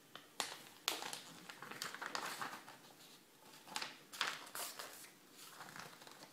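A sheet of paper rustling and crinkling as it is handled and folded, in short irregular rustles with a few sharper crackles.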